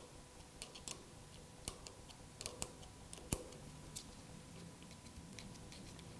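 Faint, irregular clicks and ticks of an Allen key turning in the clamp bolt of a Magura MT6 hydraulic disc-brake lever as the bolt is loosened, with one sharper click a little past halfway.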